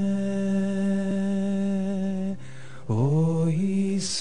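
Slow devotional singing: long sustained notes held steady, then a voice sliding up into the next note about three seconds in.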